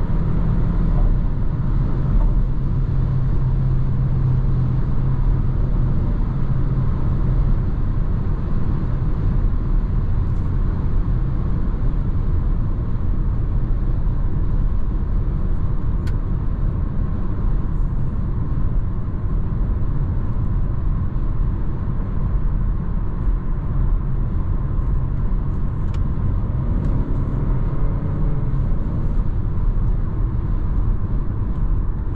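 Steady cabin noise of a 2021 Renault Arkana 1.3 TCe cruising at motorway speed, heard from inside the car: a low, even road and tyre rumble with wind noise.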